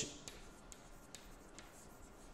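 Chalk writing on a blackboard: faint, short taps and scrapes of the chalk, about two a second.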